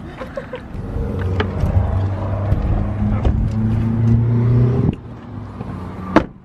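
A car engine running close by, a steady low hum that rises a little in pitch, then stops suddenly about five seconds in.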